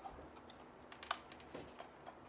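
A few faint, short clicks and taps as plastic power connectors and a metal PCI bracket on a GPU card are handled, the sharpest about a second in.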